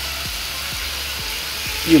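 Raw rice and diced vegetables sizzling steadily in hot olive oil in a wide frying pan, with faint scattered pops.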